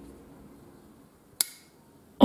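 Soft background music fades out, then a single sharp click about one and a half seconds in: the D2-steel blade of a Gocomma folding knife snapping shut into its G10 handle.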